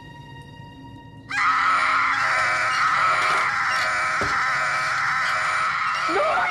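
Faint held music notes, then a little over a second in a baby bursts into loud, unbroken wailing that keeps going, with one short knock partway through.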